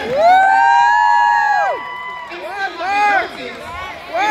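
A high voice holds one long note, sliding up at the start and falling away after about a second and a half, then a few shorter high vocal calls follow.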